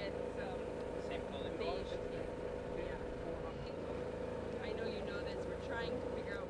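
Steady mechanical hum, with faint, indistinct conversation over it.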